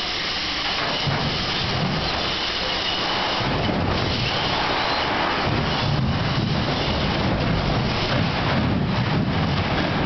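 Electric drive motors and gearboxes of a FIRST robotics competition robot running steadily as it drives, with a low rumble that swells about a second in and again from about halfway.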